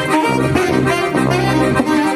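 Tuba, accordion and alto saxophone playing a hymn tune together, the tuba holding sustained low notes under the melody.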